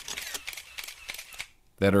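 A short pause in a man's speech with faint crackling noise, dropping to near silence before his voice comes back near the end.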